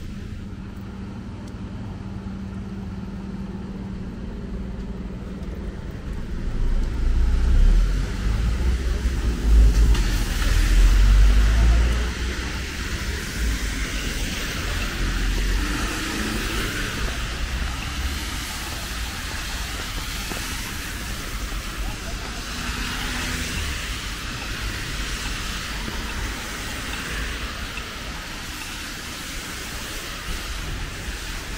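Wet city street: road traffic with tyres hissing on wet asphalt and rain falling. A deep rumble swells for several seconds about a quarter of the way in, and the hiss grows louder from about a third of the way in.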